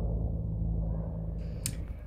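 Low, steady background rumble with a faint hum, and a short click near the end.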